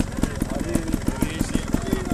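Trial motorcycle engine idling with an even, steady pulse, with faint voices of people in the background.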